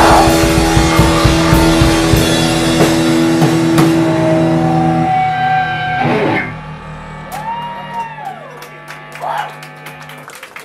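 Electric guitars of a live rock band holding the last notes at the end of a song, the sustained ringing cutting down sharply about six seconds in. A quieter hum from the amplifiers follows, with a tone that rises and falls and a few clicks.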